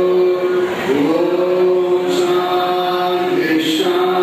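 A man's voice chanting in a slow, sung style through a microphone, holding long steady notes with a dip in pitch and glide back up about a second in, over a constant low drone.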